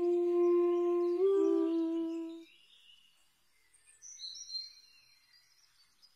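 Background music: a long low wind-instrument note that steps up briefly and falls back, fading out after about two and a half seconds. A few faint high whistling tones follow near the end.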